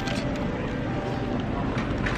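Steady background noise of an airport terminal: a low rumble with a faint murmur of distant voices.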